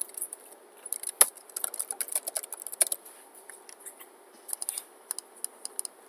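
Computer keyboard typing in quick irregular bursts of key clicks, with one louder click about a second in.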